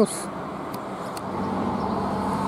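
Road traffic on a highway: a steady rush of passing vehicles' tyre and engine noise that swells gradually over the second half.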